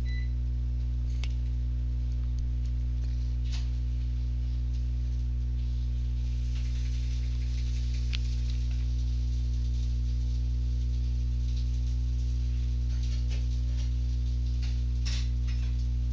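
Steady low electrical mains hum with a stack of buzzing overtones, picked up by the recording setup, with a few faint clicks scattered through it.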